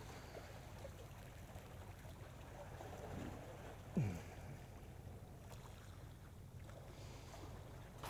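Faint ambience of calm sea water lapping at the tetrapods, with light wind. About four seconds in there is one short falling sound.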